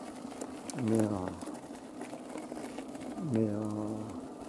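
A man's voice twice drawing out a hesitant 'mais euh…', held on a low, steady pitch, over a faint steady crackle of wheels rolling on gravel.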